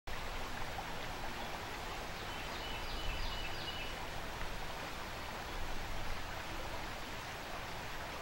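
Steady rush of fast-flowing river water over rapids.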